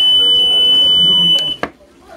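Nippy 3+ non-invasive ventilator giving one steady, high-pitched electronic beep that lasts about a second and a half, then cuts off suddenly.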